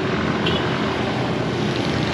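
Motor scooters and motorcycles running along the road, a steady engine and traffic noise.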